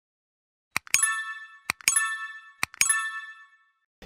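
Three clicks about a second apart, each followed at once by a bright ringing ding that dies away: the button-press sound effects of an animated subscribe, like and notification-bell prompt.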